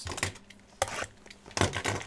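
A shrink-wrapped cardboard trading card box being handled and turned over: a few light taps and clicks, with a small cluster of knocks near the end.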